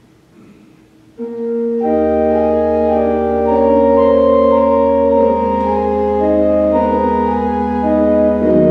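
Church organ starting a piece about a second in: full sustained chords that move slowly from one to the next, with a deep pedal bass joining half a second later.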